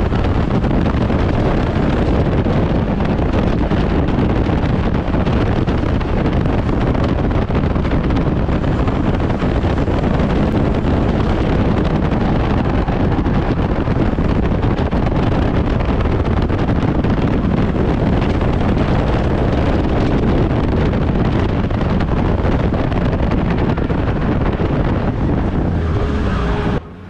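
Stock car racing around an oval, heard from an onboard camera inside the stripped-out cabin: engine and road noise mixed with heavy wind buffeting on the microphone, a loud, steady wash of noise with no clear changes in pitch.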